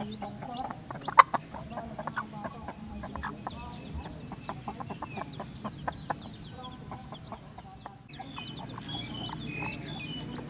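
Brood hen clucking in short repeated calls to her chicks, with the chicks' faint high peeping between them. A single sharp click about a second in is the loudest sound.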